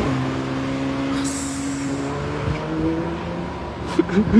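Porsche 911 GT3's naturally aspirated flat-six engine running as the car passes and pulls away. Its steady note slowly falls in pitch and fades.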